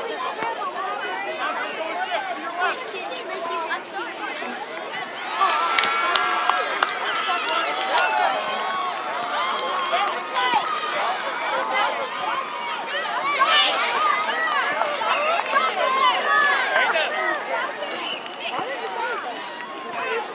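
Indistinct, overlapping chatter of spectators and players at an outdoor youth soccer game, many voices at once with no single clear speaker. It grows louder about five seconds in.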